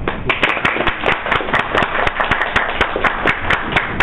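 A small audience applauding: a dense patter of hand claps that stops about four seconds in.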